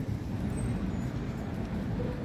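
Steady low rumble of road traffic in a city park, with no single vehicle standing out.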